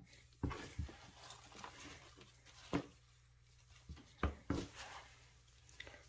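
Gloved hand rummaging through damp worm-bin compost: faint rustling broken by about five short, sharp clicks.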